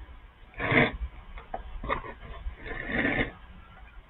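Sheet of paper being slid and handled under a document camera: two short rustles, about a second in and near the end, with a few soft ticks between them.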